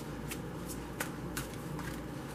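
A deck of tarot cards being shuffled by hand: a run of about six short, crisp card clicks, the loudest about a second in.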